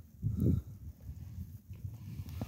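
A heavy draft horse close to the microphone gives one short, breathy low blow about half a second in. After it comes faint shuffling and rustling in snow.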